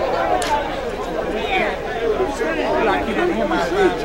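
Crowd chatter: many people talking at once in overlapping conversations, no single voice standing out.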